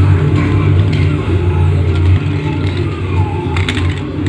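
Television audio playing in the room: music with some voices, over a steady low hum.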